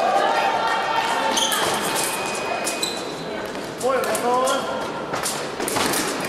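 Echoing sports-hall ambience: a long held tone ends about a second and a half in, followed by voices and scattered clicks and knocks across the hall.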